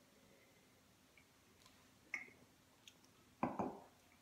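Faint mouth sounds of wine being sipped from a glass, with a brief sharp sound about two seconds in. Near the end comes a louder double knock as the stemmed wine glass is set down on the table.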